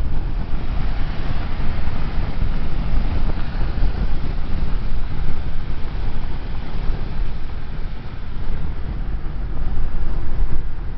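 Steady road and wind noise heard inside a car cruising at freeway speed, a constant low rumble with a hiss above it.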